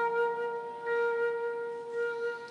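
A concert flute holding one long, steady note.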